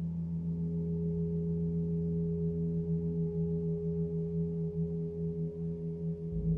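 A 36-inch cosmo gong ringing on in a steady low hum: a few sustained tones, the lowest with a slow pulsing beat.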